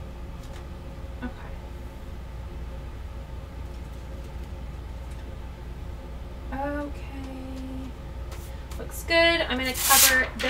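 Light paper handling, a sheet being laid and smoothed over iron-on on a heat press platen, over a steady low hum. A woman hums briefly a little past the middle, and speech starts near the end.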